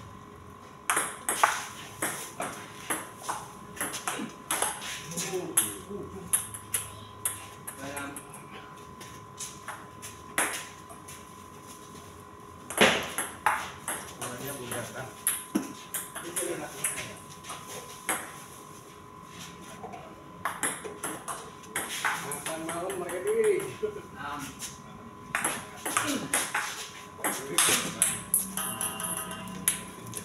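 Table tennis rallies: the ball clicking off the paddles and bouncing on the table in quick alternating hits, in several runs of strokes separated by short pauses between points.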